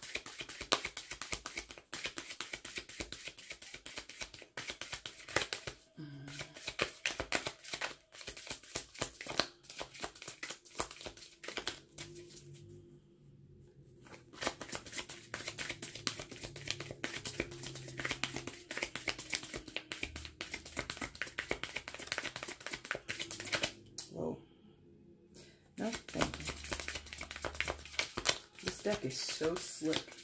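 An oracle card deck being shuffled by hand, a rapid dense patter of cards slapping against each other, with two short pauses about halfway through and later on.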